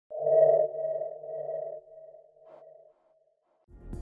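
A single electronic ping-like tone that sounds once and fades away over about three seconds, like a sonar ping. Music begins near the end.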